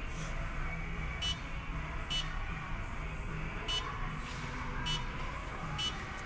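Short high beeps from the Step Automation Rock 15+ CNC press brake controller's touchscreen as values are keyed in, about six at irregular intervals, over a faint steady low hum.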